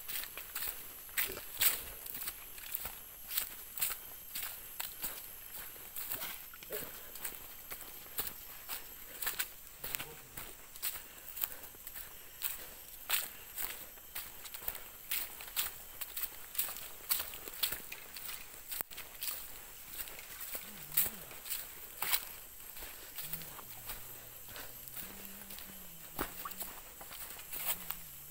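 Footsteps crunching through dry bamboo leaf litter on a forest trail, a steady walking pace of roughly one to two steps a second.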